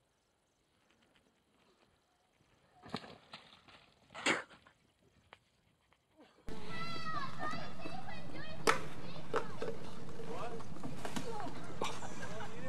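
Near silence at first, with a few brief faint sounds around the middle. From about six and a half seconds in there are indistinct voices, like children playing, over a steady background noise, with a few sharp clicks.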